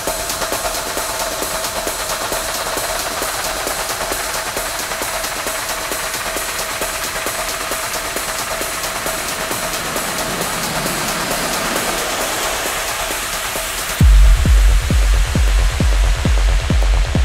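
Techno in a breakdown: fast ticking percussion and a held synth tone over a noisy build with no kick drum, then a heavy four-on-the-floor kick drum drops back in about two seconds before the end, with the high end filtered away.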